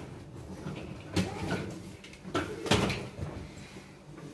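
Small objects being handled: a few sharp knocks and clicks, the loudest almost three seconds in.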